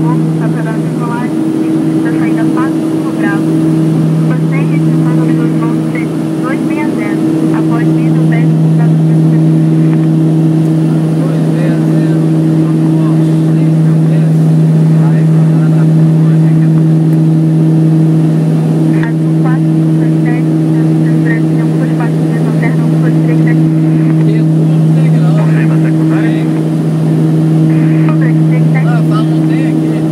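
Steady drone of the King Air B200's twin Pratt & Whitney PT6A turboprop engines and propellers heard inside the cockpit during the climb after takeoff: a strong low hum with a second tone an octave above it. The hum wavers and dips briefly a couple of times in the first several seconds, then holds steady.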